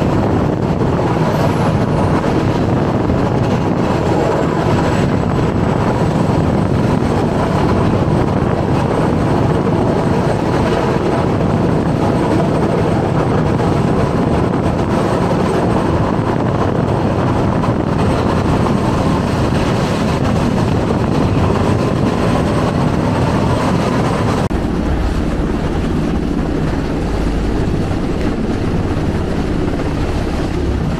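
Steady, loud roar of wind and rushing sea around a large ship under way. About three-quarters of the way through it changes to a deeper rumble with wind buffeting the microphone.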